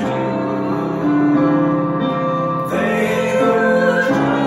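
A woman singing a hymn, accompanied by sustained chords on a Korg digital piano.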